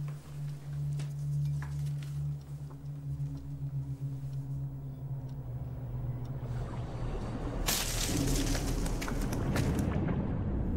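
Film score and sound design: a low held drone that fades out. From about eight seconds in, a loud rushing swell with a deep rumble under it builds up.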